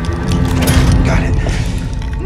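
Film soundtrack: a heavy low rumble and a tense score of held tones, under a run of clicking and cracking sound effects.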